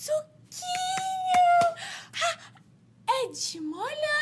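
A woman's high, wordless wail, holding one long note for about a second, with a few sharp clicks over it. Near the end her voice dips low and then rises again.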